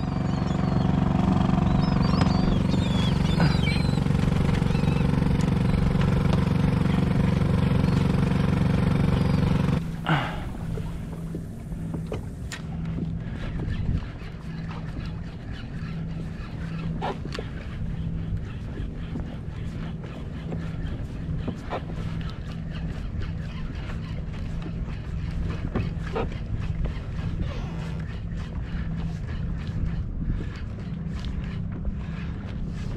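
A boat's engine running steadily nearby, cutting off abruptly about ten seconds in, with a few gull cries early on. After that, wind and water around the kayak with a fainter steady hum and occasional light knocks.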